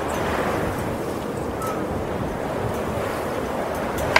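Steady rushing wind noise with no music or voice.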